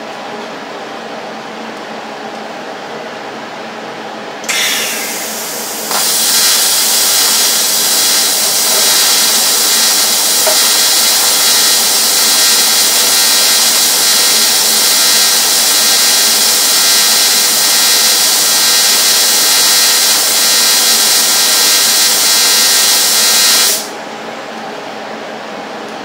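AC TIG welding arc from a Rossi TC205 inverter welder held on aluminium at 66 amps. It begins about four and a half seconds in with a short rough burst as the arc strikes, settles into a steady loud buzz about a second and a half later, and cuts off suddenly near the end. The arc is feeble: it leaves only a little mark on the aluminium and forms no pool, the fault of this welder.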